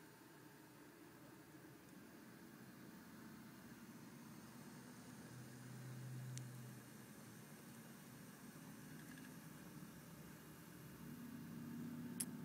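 Near silence: faint room tone and hiss, with a brief low hum about halfway through.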